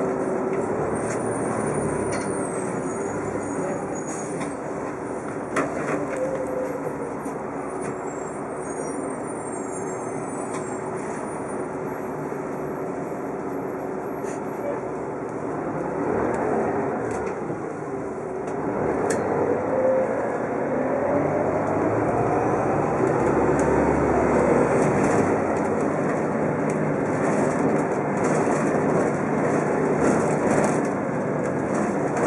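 Orion V diesel city bus heard from inside the cabin while under way: the engine and drivetrain run steadily over road noise. About two-thirds of the way through, a whine climbs in pitch as the bus gathers speed.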